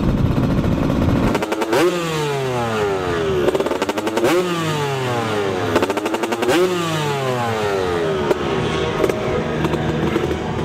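Dirt bike engines revving up and falling off in repeated long sweeps, several bikes overlapping, after a second or so of low rumble.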